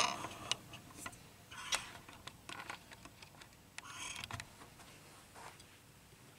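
Faint scattered ticks and short scrapes of a razor blade working into the plastic insulation of an appliance cord, with light handling clicks.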